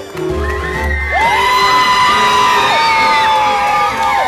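Show music ending about a second in, then an audience cheering and whooping, with high held and sliding voices.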